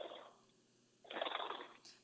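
A remote caller's voice coming through a telephone line, thin and muffled, in two short stretches with a silent gap between.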